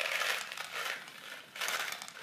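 Small, hard, round grape candies pouring out of a little cardboard carton and rattling as they scatter across a wooden cutting board: a clatter of many small clicks, then a second shorter spill about a second and a half in.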